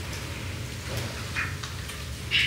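Room tone during a pause in speech: a steady low hum under a faint hiss, with one faint click about a second in.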